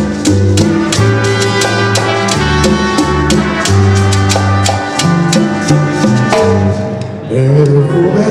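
Live sonora tropical dance band playing a passage without vocals: brass over a steady bass line, with maracas and hand drums keeping the beat.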